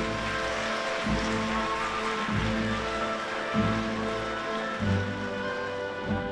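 Opera orchestra playing sustained chords over a steady low drum beat, about one beat every second and a quarter, with a bright rustling wash in the high range.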